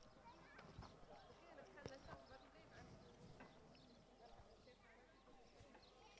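Very faint hoofbeats of polo ponies cantering on turf, mixed with faint distant voices.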